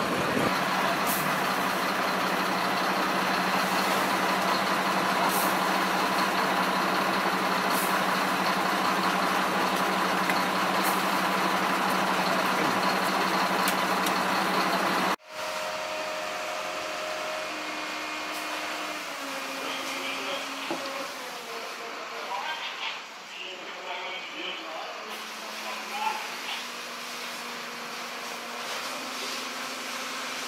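A fire engine's engine and pump running steadily with a low hum, feeding the hoses. About halfway through the sound cuts abruptly to a quieter background of faint, distant machinery.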